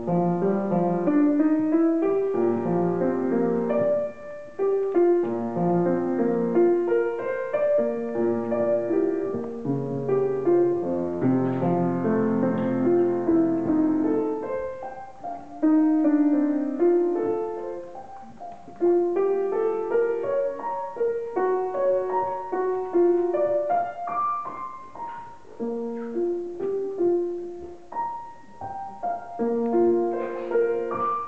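Grand piano played solo, a continuous flow of notes in the middle and upper range with a few short breaks between phrases.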